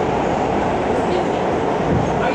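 New York City subway train running, heard from inside the car: a steady rumble of wheels on the track.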